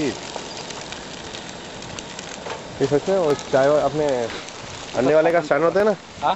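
Eggs frying in a pan on a camp stove: a steady sizzle with fine crackles, clearest in the first few seconds.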